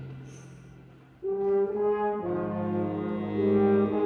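Pit orchestra music: the last chord fades out over the first second, then slow, sustained brass chords with a French-horn sound come in about a second in and move to a new chord roughly every second.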